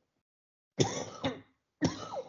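A man coughing twice: the first cough a little under a second in, the second about a second later.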